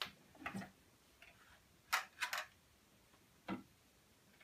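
Scattered plastic clicks and light knocks from handling the SodaStream Jet drinks maker's housing as it is turned and tipped over, about six separate clicks spread across a few seconds.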